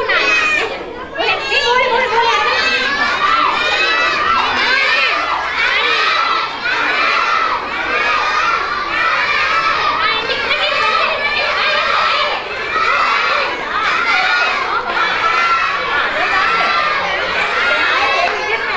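Crowd of young children shouting and cheering, many high voices overlapping without a break.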